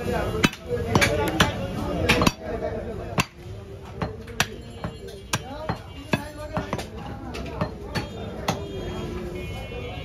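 A heavy curved cleaver chopping a cow's leg on a wooden log block: repeated sharp chops, about one or two a second, some harder than others.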